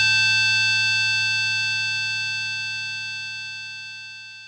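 The final chord of a sludge metal song ringing out after the band stops playing, its held notes fading steadily toward silence.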